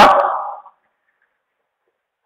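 A man's voice trailing off at the end of a drawn-out word, fading out within the first second, then near silence.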